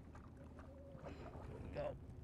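Faint outdoor ambience of open water beside a boat: low wind and water noise, with a faint voice near the end.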